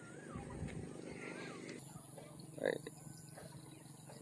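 Faint outdoor background noise with two faint warbling chirps in the first second and a half. A man says one short word about two and a half seconds in.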